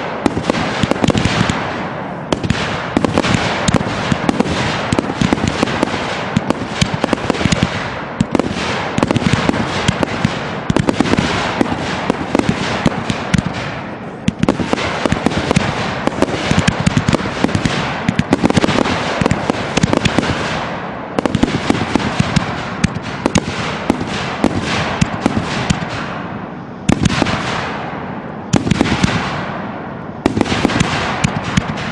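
Aerial fireworks going off in a continuous barrage: a dense run of shots, bangs and rapid crackling pops in surges a few seconds long, with a couple of short lulls near the end.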